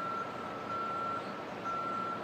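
Vehicle reversing alarm beeping: a steady high-pitched beep about once a second, each beep about half a second long, over faint outdoor background noise.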